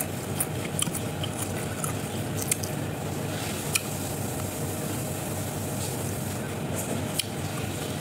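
Crispy deep-fried tilapia being torn apart by hand and chewed, giving scattered small crackles and clicks over a steady background hiss and low hum.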